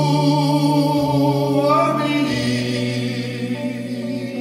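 Live singing with guitar accompaniment: voices hold long notes with vibrato over a sustained low note that changes about a second in and again past two seconds. The high voice rises briefly near the middle.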